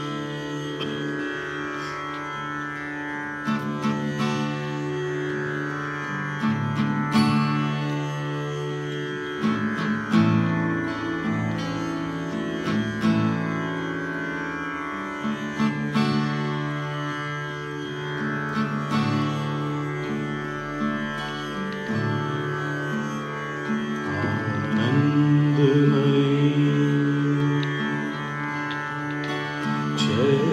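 Live bhajan music: a steel-string acoustic guitar playing over sustained low tones, the chords changing every few seconds.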